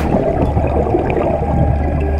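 Underwater bubbling and gurgling, an irregular crackle of air bubbles, that starts abruptly and stops as abruptly at the end.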